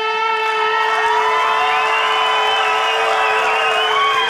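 A man's voice, amplified through a microphone, holds one long, steady note at a single pitch. From about a second in, audience cheering and whoops rise behind it, turning to applause near the end.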